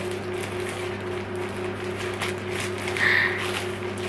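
Plastic mailer bag crinkling and rustling as it is handled and opened, over a steady low hum.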